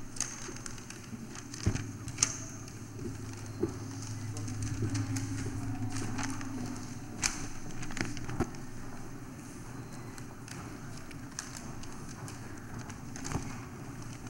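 Quiet hall room tone with a steady low hum, and scattered soft clicks and rustles from sheets of paper being unfolded and handled.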